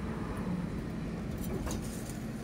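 Steady low background rumble with a faint hum, and a few soft clicks about one and a half seconds in.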